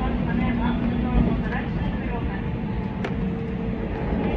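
Inside a moving JR Central commuter train: the steady low rumble of wheels running on the rails. Indistinct voices sound underneath, and a single sharp click comes about three seconds in.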